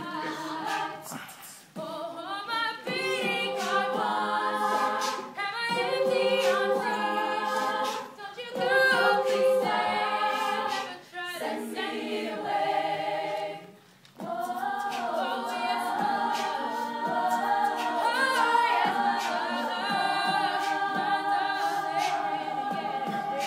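All-female a cappella group singing: a lead voice over harmonised backing voices. The sound drops away briefly several times between phrases, most deeply about fourteen seconds in.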